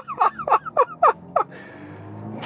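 A man laughing heartily: about six quick falling "ha"s in the first second and a half, then a low steady hum.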